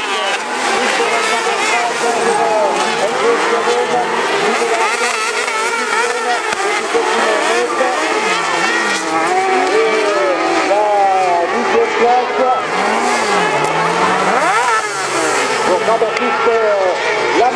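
Several Supersprint autocross buggies racing on a dirt track, a pack of engines revving up and down through the corners, the pitch rising and falling as the cars accelerate and lift.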